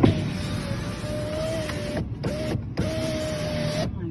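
A car's electric window motor whining as the side window is run, in three pushes: about two seconds, a short blip, then about another second, each stopping abruptly.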